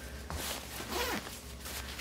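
Zipper on the small top pocket of an Itzy Ritzy Dream Convertible diaper bag being pulled open, with the bag's fabric rustling under the hand.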